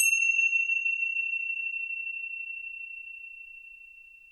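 A small metal bell struck once, ringing with a single clear high tone that fades slowly. Its brighter overtones die away within the first half second. It marks the start of silent seated breathing meditation.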